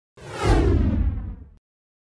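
Whoosh sound effect for a flying logo animation, with a deep rumble beneath it, sweeping downward in pitch. It swells to its loudest about half a second in and cuts off sharply at about a second and a half.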